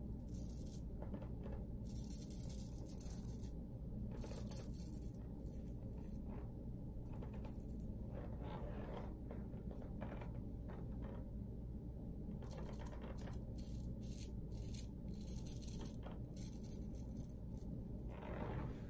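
Cardinham Killigrew shavette blade scraping through lathered stubble in many short strokes, over a steady low hum.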